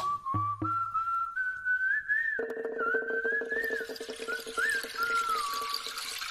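A high whistled melody, one wavering line of notes, over background music. A low steady drone with a fast rattling pulse joins it from about two and a half to five seconds in, and two low thuds fall near the start.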